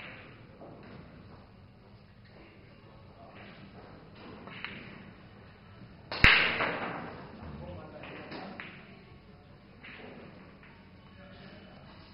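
Pool balls on a table: a few faint clicks, then one sharp, loud knock about six seconds in with a brief ring-out as the object ball drops into a corner pocket, over faint room murmur.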